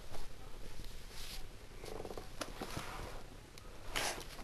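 Handling noise from a handheld camera being moved around among toys: soft rustles and scattered small clicks and knocks, with a brief low buzzing sound about halfway through.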